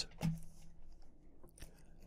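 Quiet pause with a short low hummed voice sound near the start, then a couple of faint soft clicks.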